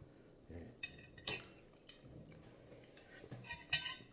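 Metal fork and spoon scraping and clinking faintly against a ceramic plate of rice, a few scattered clinks with a small cluster near the end.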